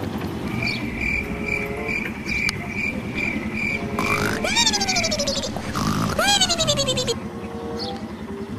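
Comedy sound effects edited over the picture: a steady low buzz with a high beep repeating about twice a second. Two whistles slide down in pitch, one about four seconds in and one about six seconds in.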